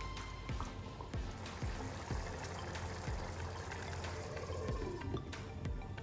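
A spoon stirring a thick simmering tomato and minced-meat sauce in a pan: wet stirring sounds with a few light scrapes and taps of the spoon, over soft background music.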